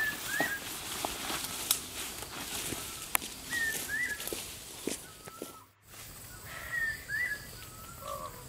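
A bird calling in short paired whistled notes, heard three times, over scattered snaps and rustles of footsteps through undergrowth. The sound cuts out briefly a little past the middle.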